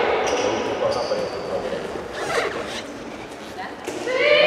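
Handball bouncing and hitting the floor in a sports hall, a few scattered knocks ringing in the big room, with voices of players and spectators calling out.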